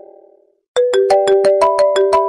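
iPhone ringtone: a quick marimba-like phrase of struck notes that dies away, a brief gap of silence, then the phrase starting again about three-quarters of a second in.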